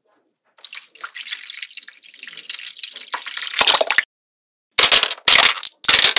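Magnetic balls clicking and rattling as they are handled: a stream of small clicks that grows louder and stops suddenly about four seconds in, then after a short pause a run of loud clacks.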